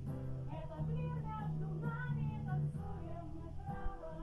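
Live acoustic duet: two women singing together over acoustic guitars.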